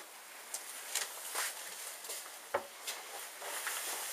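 A few faint clicks and light knocks over a low steady hiss, the strongest about two and a half seconds in.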